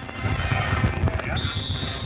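Broadcast field sound with music in the background and a low, uneven rumble. A steady high-pitched tone comes in about one and a half seconds in.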